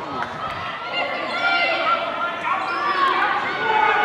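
Several voices shouting and calling out at once, overlapping and rising and falling in pitch, as at a football match during open play.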